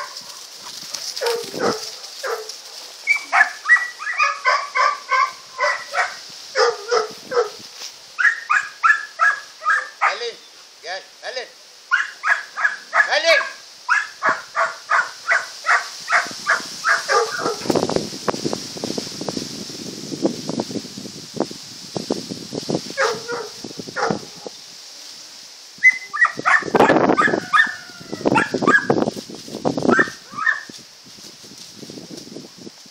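Setter puppies yapping: long runs of short, high barks, about two to three a second, with brief pauses. Past the middle the barking gives way to rough noise, and a few louder yelps come near the end.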